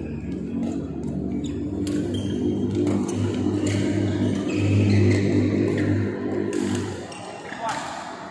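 Badminton rally: a racket strikes the shuttlecock with sharp clicks a few times. Under the clicks is a loud low drone that swells to its peak about halfway through and fades near the end.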